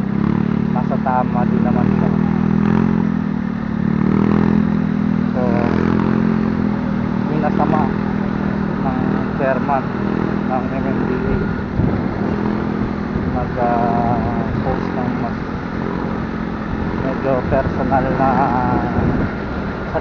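Motorcycle engine running steadily as the bike rides through traffic, heard from the rider's own camera. A voice speaks in short snatches now and then over the engine.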